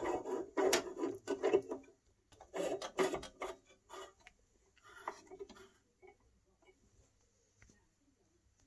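Mercury vapour bulb being screwed by hand into the porcelain E27 socket of a metal street-light fixture: a run of rubbing and scraping strokes, thinning to a few faint ticks by about six seconds in.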